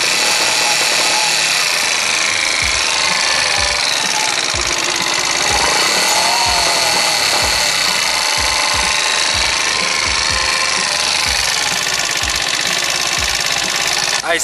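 Moped engine and drive running with the rear wheel locked, a steady whir with irregular low thumps from about three seconds in. The rider takes the fault for something locked in the rear wheel, not the motor.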